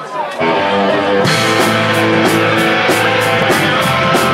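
Live punk rock band starting a song: electric guitar comes in about half a second in, then the full band joins a little after a second with a steady beat of regular hits, about three a second.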